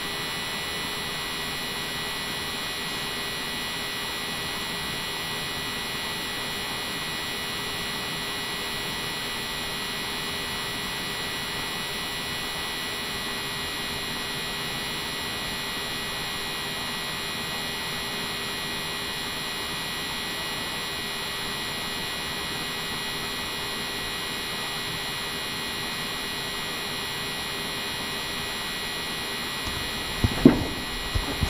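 Steady electrical hum and hiss of the recording's background noise, with thin unchanging tones and no other events.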